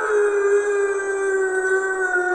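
A long wolf-like howl held on one pitch and dipping slightly near its end, used as an intro sound effect.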